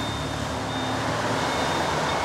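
Steady hiss of background noise with a faint high beep coming and going: a car's door-open warning chime sounding with the driver's door open.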